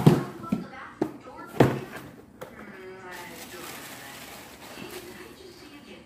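Cardboard shoebox handled and set down, several sharp knocks in the first two seconds, then a steady rustle of tissue paper as a sneaker is unwrapped from the box.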